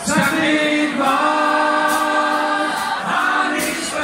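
A group of male voices singing in close harmony with no instrumental backing, holding long sustained chords.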